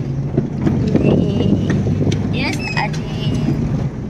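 Car cabin noise while driving: a steady low rumble of engine and road noise, with a few short high-pitched sounds in the middle.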